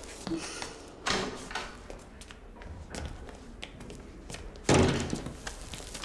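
An interior door opening and shutting, with a few knocks and thuds, the loudest near the end, as a stack of notebooks is set down on a desk.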